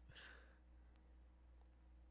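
Near silence: a faint breathy exhale through the nose or mouth right at the start, trailing off a laugh, then only a faint steady low hum of room tone.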